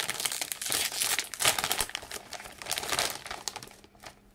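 Crinkling and crackling of a plastic potato-chip bag as it is pulled open and handled, dying away near the end.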